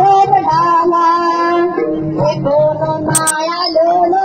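A song sung by a high female voice over instrumental backing, the melody held in long, wavering notes. Two short sharp clicks sound a little after three seconds in.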